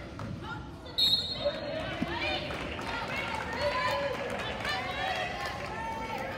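Wheelchair basketball game sounds in a gym: players' voices calling out on court and a basketball bouncing on the hardwood, with a brief, sharp high-pitched sound about a second in.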